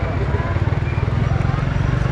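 A motorcycle engine idling close by, a steady low rapid putter. Children's voices chatter over it.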